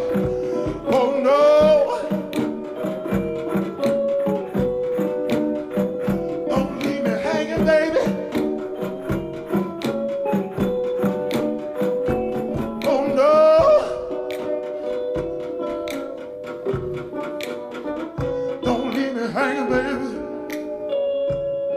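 A male singer performing into a handheld microphone, singing short, wavering phrases every few seconds over a backing of sustained chords and a steady beat.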